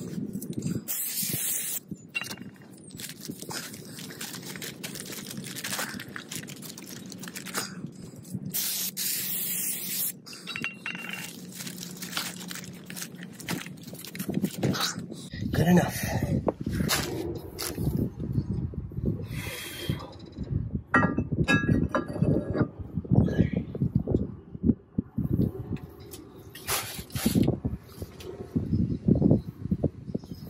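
Aerosol cleaner hissing in two bursts of a second or two, sprayed onto a new brake disc rotor to strip its sticky anti-rust shipping oil. From about halfway on, irregular knocks and clinks of metal brake parts being handled and fitted.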